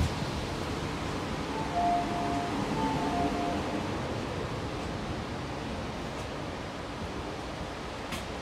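Steady background noise inside an Alstom Metropolis metro carriage, with a two-note electronic chime, high then low, sounding twice about two to three and a half seconds in.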